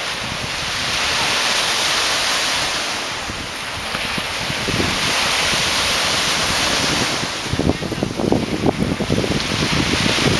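Surf washing in, the hiss swelling and fading twice, with wind buffeting the microphone in gusts over the second half.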